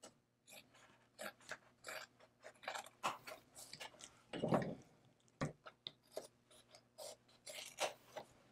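Hands handling and pressing a square of metallic leather flat on a plastic cutting mat: irregular soft crinkles, rustles and scrapes, with a sharp knock about five and a half seconds in.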